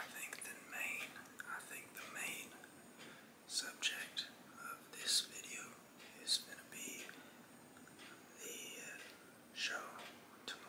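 A man whispering, with sharp hissy s-sounds and no clear voiced words.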